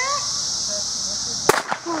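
A single sharp crack of a starter's pistol about one and a half seconds in, signalling the start of a sprint race, with a brief echo after it. Underneath runs a steady high-pitched drone, with a few voices calling.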